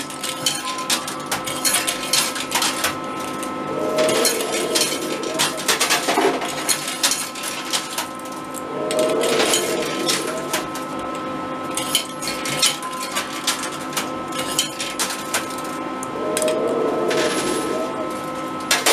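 Coin pusher arcade machine in play: many short metallic clicks and clinks of coins dropping and knocking together on the playfield, over a steady electronic hum with two thin tones.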